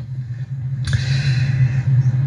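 A steady low hum, with a hiss in the middle lasting about a second and a half.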